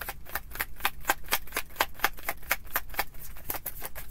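A tarot deck being hand-shuffled: quick, even clicks of card against card, about four a second.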